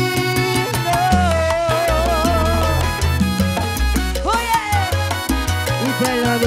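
A live salsa/timba band plays a vallenato medley in timba style, with a pulsing bass line and a steady beat on congas and timbales. A melody note is held with vibrato from about one to three seconds in.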